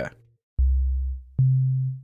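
Phasemaker FM synth playing a plain sine wave from a single operator: two low, sustained notes, each starting with a click. The first comes about half a second in, and the second, higher one about a second and a half in.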